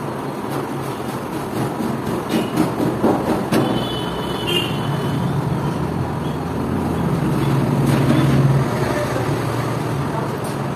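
Steady motor-traffic noise with a low engine drone that swells and fades about seven to nine seconds in. There are a few short knocks in the middle and a brief high tone near the halfway point.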